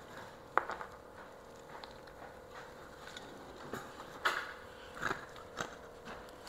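A few short, faint crackles and clicks, with one sharper click about half a second in, as a crispy deep-fried catfish fillet is handled by hand and set down on a plate.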